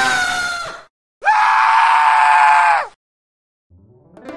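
Two screeching dinosaur-roar sound effects, the first short and the second longer, holding one pitch and sliding down at the end, with dead silence between them.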